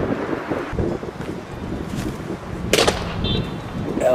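Wind and city background noise, with one sharp bang near the end, followed a moment later by a short electronic beep.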